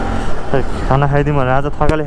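Mostly a man talking over the continuous low rumble of a Bajaj Pulsar NS200 motorcycle being ridden through traffic, with wind noise on the microphone.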